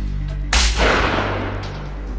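A single shotgun shot about half a second in, its sound dying away over about a second, with background music underneath.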